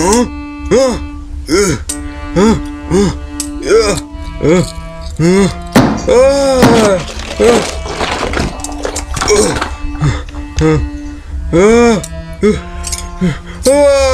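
A fight: short cries that rise and fall in pitch, with knocks, come about every half second and crowd together around six to seven seconds in. Underneath is background music with long held notes.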